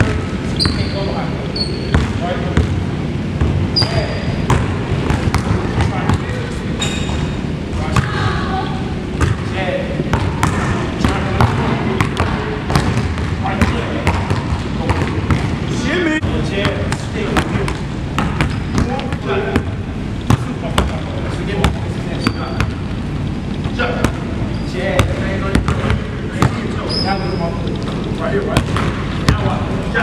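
Basketballs bouncing on a hardwood gym floor: many irregular thuds throughout, with occasional short high squeaks among them.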